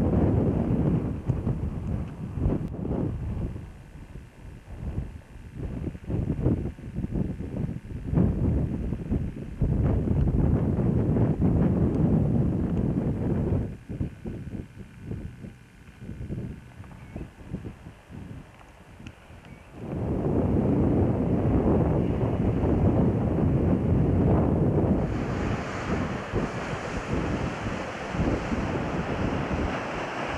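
Wind buffeting a camcorder microphone in gusts, with quieter lulls between them. In the last few seconds a steadier hiss of sea surf joins the wind.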